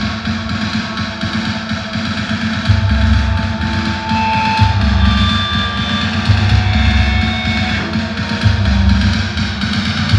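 Deathcore band playing live through a large PA: distorted guitars, bass guitar and drum kit, with the bass drum pounding in rapid stretches of about a second that recur through the passage.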